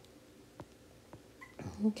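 A few faint, light taps of a stylus on a tablet's glass screen, then a spoken "Okay" near the end.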